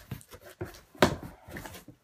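Cardboard shipping box being handled, its flaps pulled open by hand: a few short scrapes and knocks of cardboard, the sharpest about a second in.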